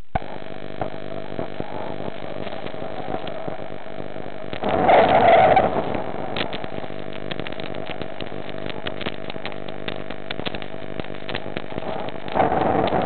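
Steady electrical hum at a fixed pitch on a diving camera's audio line, with faint clicks throughout. A louder rush of noise comes in about five seconds in and lasts about a second, and another just at the end.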